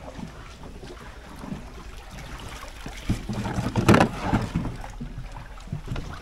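Small hand-rowed wooden boat: the oar dipping and splashing in the canal water, with a cluster of sharp knocks and splashes from about three seconds in, the loudest just before four seconds. Low wind rumble on the microphone underneath.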